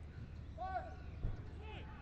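Short shouted calls from players on a football pitch, three brief arched cries, with a single low thud about a second in, over a steady low stadium hum.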